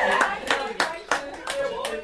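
Hands clapping, about three claps a second, with voices talking over them.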